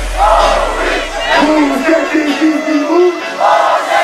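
Loud shouted voices with a crowd-like roar, yelling in drawn-out calls, during a dance-track breakdown in which the kick drum and bass drop away in the first half second.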